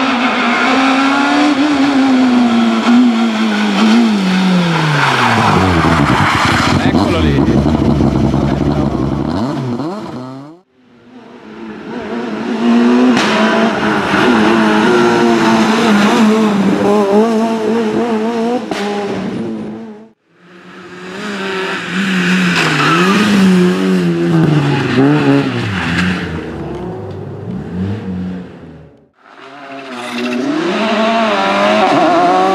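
Rally cars passing at speed, one per clip with abrupt cuts between them: first a Renault Clio S1600, its revs climbing and dropping through gear changes and then falling away as it passes, then a Peugeot 207 S2000 running through standing water on the wet road, then another rally car revving up and down through the gears.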